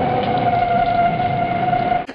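Theremin in a film score holding one high note, just after stepping up in pitch, with a steady hiss behind it.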